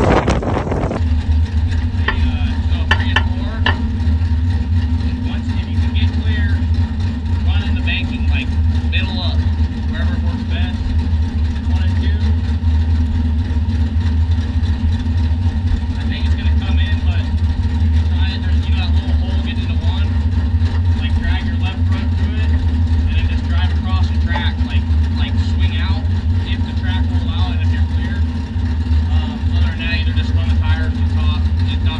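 Dirt-track sport modified's engine idling, heard through an onboard camera inside the car: a steady low rumble that sets in about a second in.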